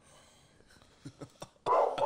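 Quiet room noise with a few soft clicks, then a man's brief breathy laugh near the end.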